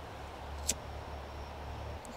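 Quiet background with a steady low rumble and a single sharp click a little under a second in.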